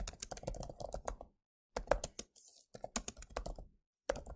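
Typing on a computer keyboard: quick runs of keystrokes, broken by two short pauses, about a second and a half in and again a little after two seconds.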